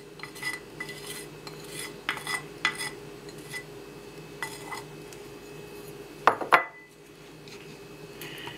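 Dishes knocking and clinking as a small bowl is tapped and scraped against a mixing bowl, emptying melted butter into the arepa flour, with two louder knocks about six seconds in. A steady low hum runs underneath.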